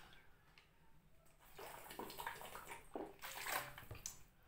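Water being drunk from a plastic bottle: a run of quiet gulps and sloshes, starting about a second and a half in.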